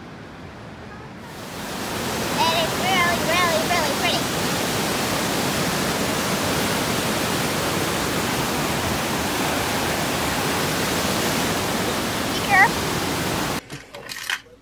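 Gently flowing river, then, after a cut about a second in, the louder steady rush of white-water rapids over rock. A few brief high wavering calls or tones sound over it about two seconds in and again near the end. The rush cuts off just before the end.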